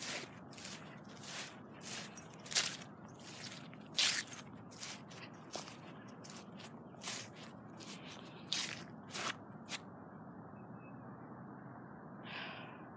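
Footsteps crunching across a lawn of grass and dry leaves, about two steps a second, stopping about ten seconds in.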